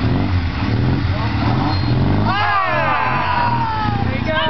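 Motorcycle engines running at low revs, pitch wavering slightly, as the bikes creep along in a slow race. From a little past two seconds in, a loud, drawn-out yell falls in pitch over the engines.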